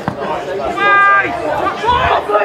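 Players' voices shouting and chattering across a football pitch, with one long drawn-out call about a second in and a dull thump near the end.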